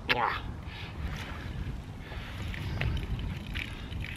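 Low, steady rumble of wind buffeting the microphone outdoors, with a few faint ticks.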